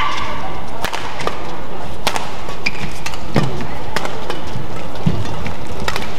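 Badminton rally: racket strings striking the shuttlecock in a fast exchange, about half a dozen sharp cracks at uneven intervals of half a second to a second, over steady arena crowd noise, with a short shoe squeak on the court near the start.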